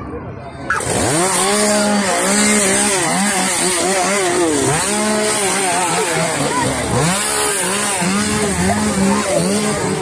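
A two-stroke chainsaw starting up suddenly about a second in and then revved up and down over and over, its pitch rising and falling in repeated swells.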